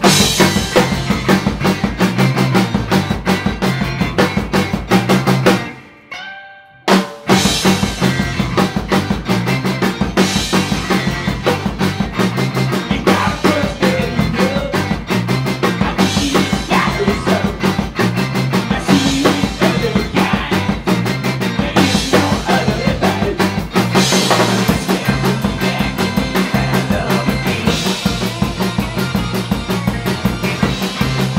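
Live garage rock band playing loud: drum kit, electric guitars and bass. About five seconds in the band stops dead, leaving a note ringing, and crashes back in a second and a half later.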